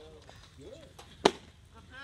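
A single sharp pop a little over a second in: an 86 mph pitched baseball smacking into the catcher's leather mitt. Faint voices sit in the background.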